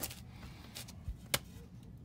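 A few faint metallic clicks and a soft knock from a pickup's front suspension parts being worked by hand at the ball joint and spindle, the sharpest click a little over a second in.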